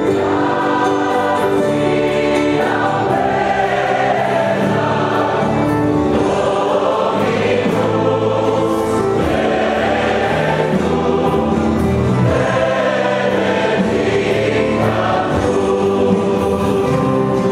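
A choir singing religious music in sustained, overlapping chords.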